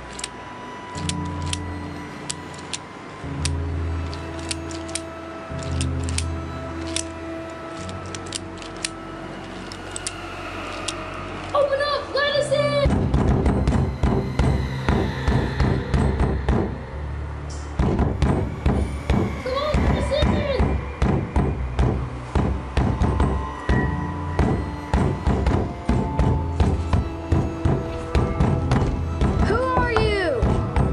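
Soundtrack music with no dialogue. It opens with sustained low notes under a run of sharp ticks, then a steady driving beat starts about 13 seconds in, with short voice-like passages over it.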